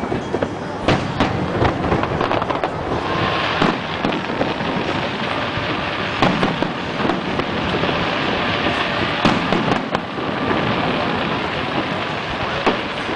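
Aerial fireworks shells bursting in a rapid, irregular volley of sharp bangs. A continuous hiss sets in about three seconds in and fades near the end.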